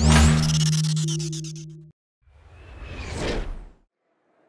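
Intro sound design: a sudden hit with a rising swoop over a held low tone, fading out over about two seconds. After a short gap, a whoosh swells up and cuts off near the end.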